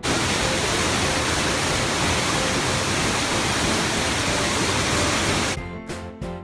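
Small waterfall close by: a loud, steady rush of falling water that starts suddenly and stops suddenly shortly before the end, when guitar background music comes back.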